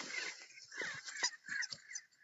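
Short, high-pitched dog yips and whines, several in quick succession, each sliding down in pitch, with soft snuffling between them.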